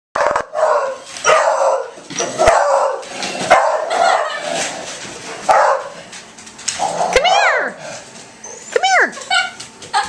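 Dogs barking repeatedly in alarm at a small remote-control toy helicopter, about one bark a second. Near seven and nine seconds in come two yelping howls that rise and then fall in pitch.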